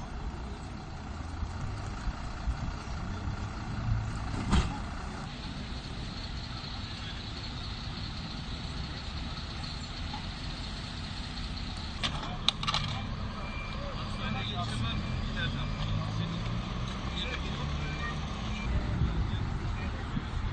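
Vehicle engines running in the street under people's voices, with sharp knocks about four and twelve seconds in and a faint series of short beeps in the second half.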